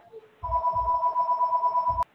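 Electronic telephone ring: two steady tones trilling rapidly, starting about half a second in and cutting off abruptly.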